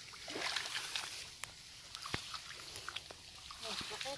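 Shallow muddy water sloshing and splashing as a person wades and reaches into it, with scattered drips and small sharp clicks.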